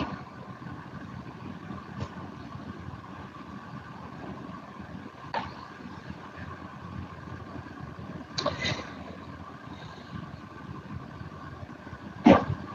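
Faint steady background hum and hiss from an open microphone in an internet voice-chat relay, with a few faint clicks about two, five and eight and a half seconds in.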